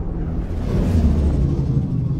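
Cinematic trailer sound design: a deep, rumbling drone with sustained low tones, swelling with a whoosh about half a second in that fades again.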